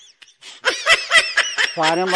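High-pitched laughter, a quick run of short giggling bursts about a second in. Near the end, background music with a held low note comes in.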